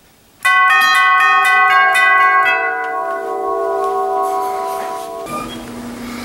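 Electric tubular doorbell chime with three brass tubes, struck in a quick run of about a dozen notes over two seconds and rung as a dinner call. The tubes ring on and slowly fade, then the sound cuts off suddenly near the end.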